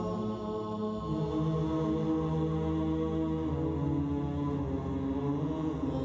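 Background music: slow, chant-like vocal music of long held notes that change pitch every few seconds.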